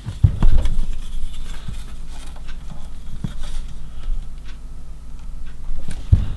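Plastic model-kit sprues being handled and turned over, with light clicking and rattling of the plastic and a few dull thumps in the first second.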